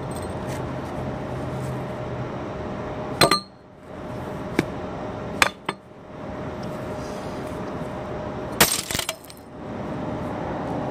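A glass beer bottle on concrete struck with a wooden stick: a sharp knock with a ringing clink about three seconds in, a few lighter clicks, then a loud clatter of glass near the end as the bottle breaks.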